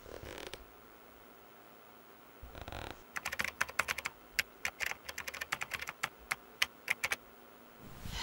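Typing on a laptop keyboard: a fast, uneven run of key clicks for about four seconds in the second half. Two short, soft noises come before it, one right at the start and one about two and a half seconds in.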